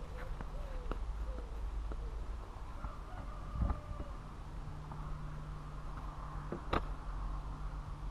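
A camper van's outside storage locker being opened: a dull thump about halfway through and a sharp click near the end, over a steady low rumble, with a few faint bird chirps in the first second or so.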